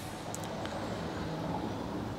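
Steady low background hum, with a couple of faint ticks about half a second in.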